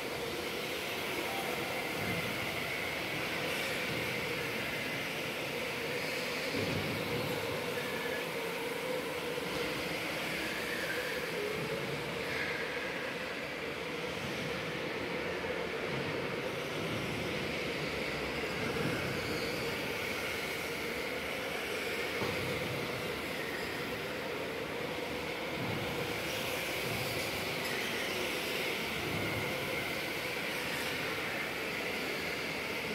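Electric go-karts racing on an indoor track: a steady whine from the kart motors that wavers slightly as the karts pass, echoing in the large hall.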